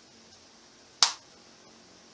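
A single sharp click about a second in, dying away quickly, against quiet room tone.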